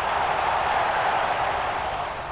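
Football stadium crowd noise: a steady roar from the terraces just after a goal, easing off slightly near the end.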